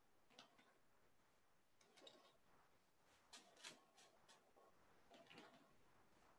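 Near silence, broken by a few faint, irregular ticks and scrapes of a small paintbrush pushing acrylic paint hard into the bristles of another brush.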